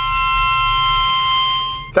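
Harmonica blown in one long held chord, several reedy notes sounding together, that cuts off near the end.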